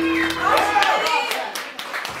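A live rock band's final held chord rings out and fades in the first second, and from about half a second in scattered hand clapping from a small audience begins, with voices.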